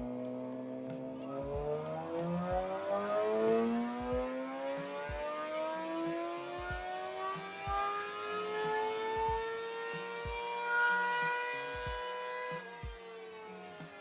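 Suzuki sport bike engine on a chassis dyno, held briefly at a steady speed and then revved in one long dyno pull, its pitch climbing smoothly for about eleven seconds before the throttle shuts near the end and the revs drop away.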